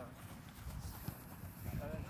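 Footsteps of a group of players jogging on artificial turf, a loose patter of soft thuds, with faint voices.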